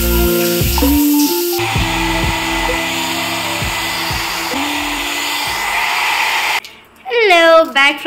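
Hand-held hair dryer running steadily under background music, starting about a second and a half in and cutting off suddenly near the end.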